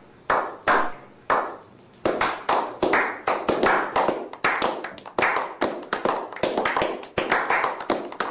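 A small group clapping: a few single claps at first, then from about two seconds in several people clapping together in quick, overlapping applause.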